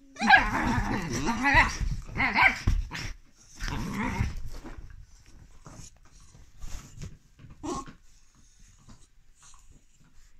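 A dog growling and grumbling in loud, wavering bursts: a long one in the first two seconds, a short one, then another around four seconds. It is the irritated warning of a dog that does not want to be pestered into play. After that come only soft rustles and one short call near eight seconds.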